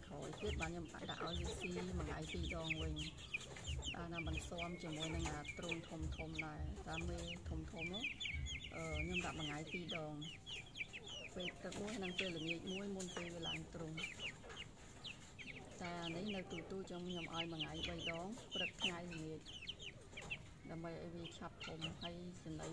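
Young, half-grown chickens calling continuously: many quick, high-pitched peeps over lower, repeated clucking calls.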